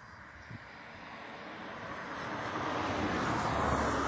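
A passing vehicle, its noise swelling steadily louder and peaking near the end.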